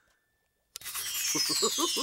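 A magical shimmering sparkle effect that sets in suddenly after a brief silence about three quarters of a second in, a bright glittering sweep that falls slowly in pitch as a picture transforms.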